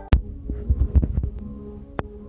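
Phone handling noise close to the microphone: a sharp click, then a cluster of low thumps and knocks during the first second or so. Faint held notes of a backing track come in under it near the end.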